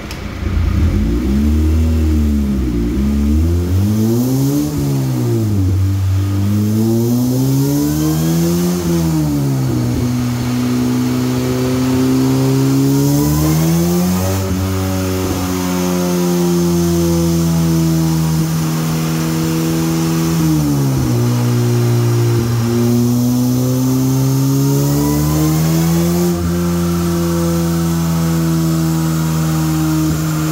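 Engine of an open tube-frame track car running on a chassis dyno, driving its rear wheel on the roller. It blips the revs up and down quickly several times at first, then holds steadier engine speeds that step up and down a few times.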